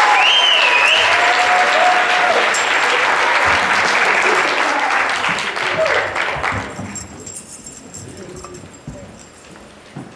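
Audience applauding after a song, with voices calling out over it in the first couple of seconds; the applause dies away about seven seconds in.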